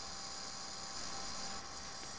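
Steady hiss with a faint electrical hum: the background noise of a home voice recording, with no other sound.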